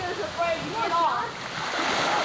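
Voices calling out, then a man plunging into creek water near the end: a splash and a rush of churned water.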